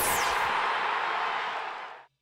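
A whoosh transition sound effect: a short falling sweep, then a rushing hiss that slowly fades and cuts off abruptly at the end.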